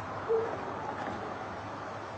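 A single short owl hoot about a third of a second in, over steady background noise.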